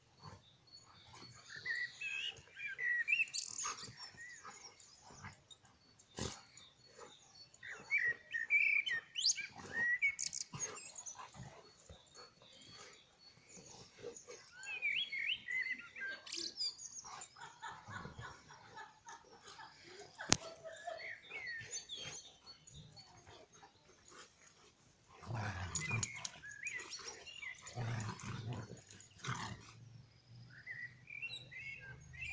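Two dogs play-fighting, making intermittent dog vocalizations in several bursts, with a louder, lower stretch near the end.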